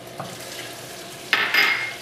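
Hot melted butter sizzling in a stainless steel pan, with a louder burst of sizzling and stirring about two-thirds of the way in as ground cinnamon is stirred in with a wooden spoon.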